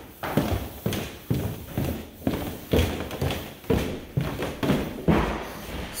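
Footsteps going down a wooden staircase: a steady run of about a dozen heavy treads, roughly two a second.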